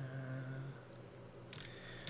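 A man's voice holding a short, steady, wordless 'mmm' for under a second, then a few sharp computer keyboard clicks near the end.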